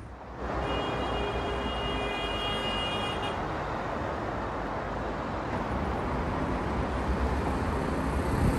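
Road traffic noise: a steady rush of passing vehicles, with a vehicle horn sounding for about two and a half seconds near the start.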